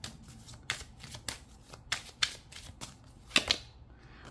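A deck of oracle cards being shuffled by hand, the cards snapping against each other in a run of irregular clicks, loudest a little after three seconds in.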